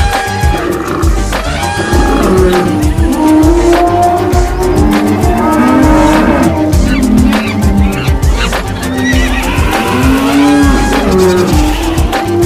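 Music mixed with a cartoon animal-stampede sound effect: frequent deep thuds of running hooves under animal calls.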